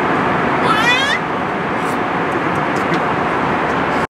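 Steady roar of an airliner cabin in flight, with a toddler's short, high-pitched squeal rising in pitch about a second in.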